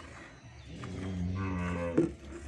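Murrah water buffalo mooing: one long, low call that starts about half a second in and grows louder, ending with a brief sharp peak.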